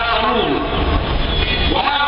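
A man's voice through a public-address microphone, with a low rumble that swells about half a second in and eases off near the end.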